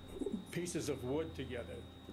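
Speech only: a man talking, quieter than the interpreted speech just before and after.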